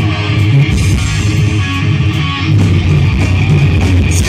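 Live rock band playing loud, with electric guitar, bass guitar and drums carrying an instrumental stretch without vocals.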